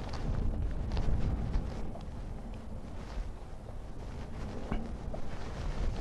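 Wind buffeting the microphone over a low rumble of an electric unicycle rolling along a dirt trail, with a few faint ticks.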